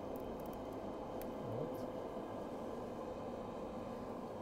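Steady low hum and hiss of the kitchen, with a few faint soft clicks and rustles as fresh basil leaves are picked off the sprig by hand in the first second or so.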